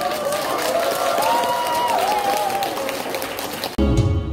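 Audience clapping, with voices calling out over it. Near the end, loud music with a strong bass cuts in suddenly.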